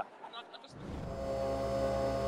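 Single-serve coffee machine brewing into a mug, its pump humming steadily; the hum starts a little under a second in and grows louder.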